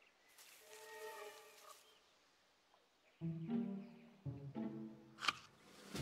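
Orchestral film score: after a faint pitched note early on, low bowed strings (cello and double bass) come in about three seconds in and hold sustained notes. A single sharp click comes near the end.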